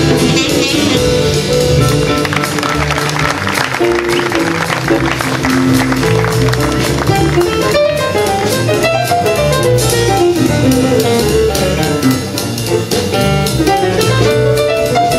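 Live small-group jazz: piano, bass and drum kit swinging together, with an alto saxophone playing near the start before the piano carries on.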